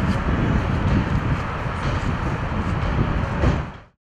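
Outdoor street ambience: a steady low rumble of traffic with wind buffeting the microphone, fading out just before the end.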